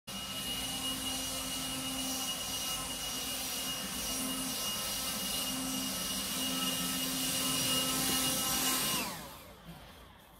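Handheld leaf blower running steadily with a high fan whine, then switched off about nine seconds in, its pitch falling as it spins down.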